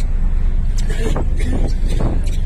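Steady low rumble of a tender boat's engine, heard from on board, with people's voices over it.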